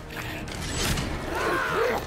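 Battle-scene soundtrack from a fantasy TV series: creaking and clattering sound effects, with a sound that rises and falls in pitch in the second half.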